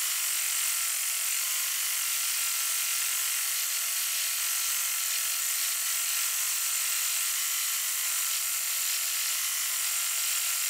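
Multi-needle embroidery machine running steadily as it stitches an inside quilting pattern, an even mechanical buzz from the needle drive with the hoop shifting under the needles.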